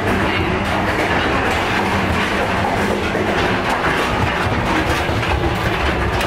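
A moving passenger train heard from inside the carriage: a steady rumble of wheels on rails, with some rattling.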